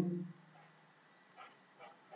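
A man's voice trailing off at the start, then near silence with a few faint, brief sounds.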